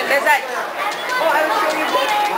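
Indistinct chatter of several children's voices overlapping, with no clear words.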